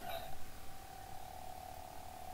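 Salvaged toy lightsaber soundboard playing its steady electronic hum through a small speaker, with a short swing effect right at the start as the hilt is swung.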